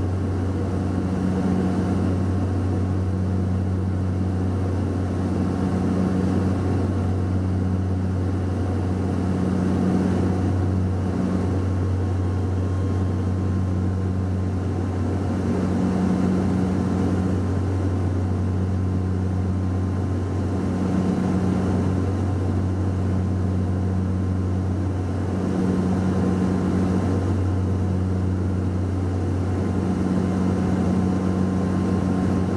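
Cabin drone of a Saab 340B's General Electric CT7 turboprops and propellers on approach, a steady low hum with a slow regular pulsing every second or two.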